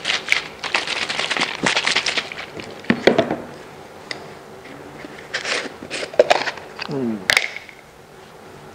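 Rustling and rubbing handling noise as hands are brushed together and a cloth wad is pressed and wiped on a wooden worktable. A dense crackly rustle fills the first two seconds, followed by a few short scrapes and knocks.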